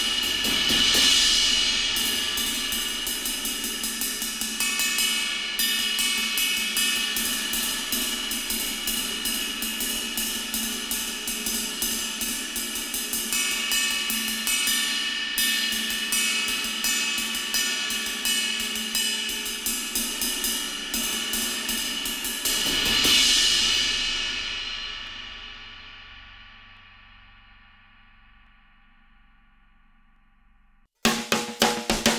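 Zultan 22" RAW Jazz Ride, a hand-hammered ride cymbal, played with a drumstick in a steady, fast run of strokes. Its wash swells louder about a second in and again about three quarters of the way through. Then it is left to ring out, fading away over the last several seconds.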